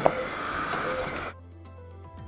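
A steady hiss that cuts off suddenly just over a second in, followed by faint background music with light ticking notes.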